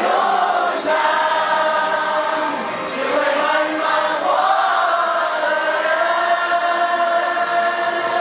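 A mixed group of young men and women singing together, holding long drawn-out notes.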